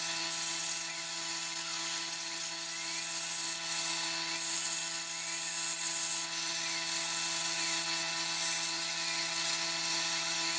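CNC plasma cutter cutting steel plate: a steady hiss over a constant hum, with a faint whine gliding up and down as the torch traces the curved spoke shapes.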